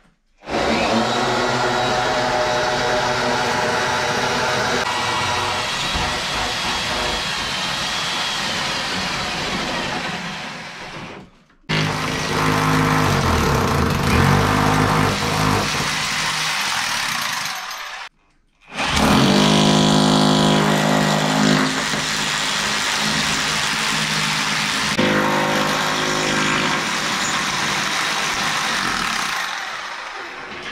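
Corded electric drill running under load in three long runs, stopping briefly twice, its motor pitch wavering as it drills holes.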